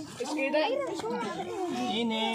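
Voices of children and adults talking over one another, in a crowded, chattering mix.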